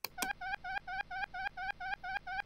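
Tux Paint's Darken magic-tool sound effect, played as the mouse is dragged across the canvas: a short electronic tone with a wobbling pitch, repeated about five times a second.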